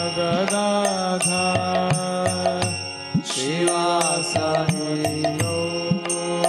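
A man singing a devotional chant while striking a pair of small hand cymbals (kartals) in a steady rhythm, each strike ringing bright and metallic. There is a brief break in the cymbal strokes a little past halfway.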